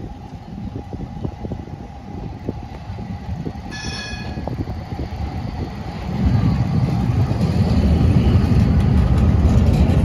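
Metro do Porto light-rail train approaching and passing close by. It gives a short high horn toot about four seconds in, then its running rumble grows loud from about six seconds as it goes past.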